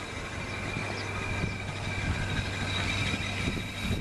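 Steady low engine hum with a faint high whine above it.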